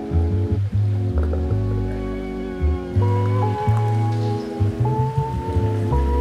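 Background music: held chords over a deep bass line that changes note every second or so.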